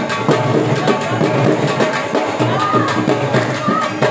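Saraiki jhumar dance music led by a dhol: a fast, steady drum rhythm, with a held melody line coming in over it in the second half.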